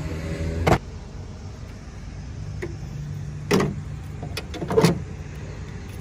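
A car engine idling with a steady low hum, with several sharp knocks and clicks over it.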